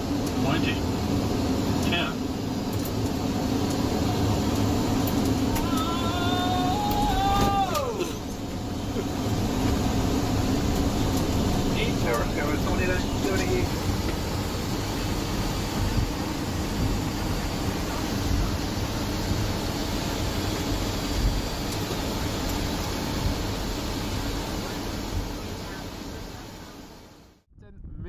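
Boeing 757 flight-deck noise on the landing roll and taxi: a steady rumble and hum of engines and airflow. Voices are heard briefly twice, about a quarter of the way in and again near the middle. The sound cuts off abruptly just before the end.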